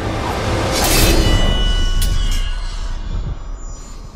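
Film fight sound under a dark orchestral score: a sword blade swishes and strikes about a second in, leaving a high metallic ring, with a sharp click near two seconds.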